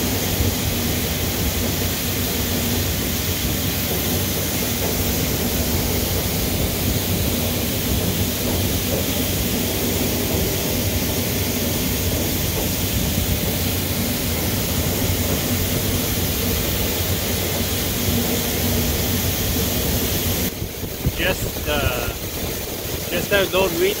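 Grain auger running and wheat pouring from its spout into a grain trailer: a steady rushing noise with a low hum underneath. About twenty seconds in it gives way to quieter outdoor hiss and a man's voice.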